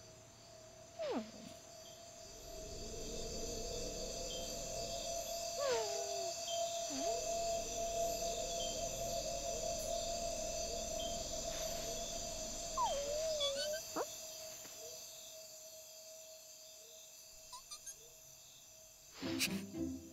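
Soft, sparse film-score music built on a long held tone and a low swell that builds about two seconds in and fades away after about fifteen seconds. It is dotted with a few short squeaks that glide in pitch, from the cartoon fox character.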